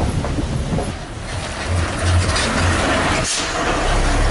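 Rumbling, rattling noise of a heavy motor vehicle, with a few low thuds near the middle. It dips briefly about three seconds in and returns as a steadier low rumble.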